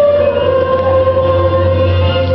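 A young musical-theatre chorus singing together on one long held note. The note dips slightly just after the start and then holds steady.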